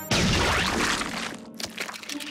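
Cartoon sound effect of a gadget blowing up and splattering slime: a sudden loud burst about a tenth of a second in that tails off over about a second and a half.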